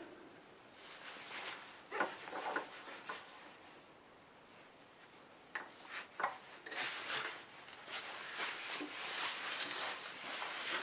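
Light handling sounds as a wooden block is fitted between a wood lathe's centres with the lathe switched off: scattered soft knocks and clicks with some rubbing, quiet at first and busier in the second half.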